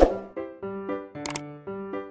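Bouncy keyboard music with short detached notes. A sharp click sounds right at the start, the loudest moment, and a quick double click comes about 1.3 seconds in: mouse-click sound effects of a subscribe-button animation.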